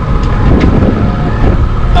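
Wind buffeting the microphone: a loud, gusty rush of low noise.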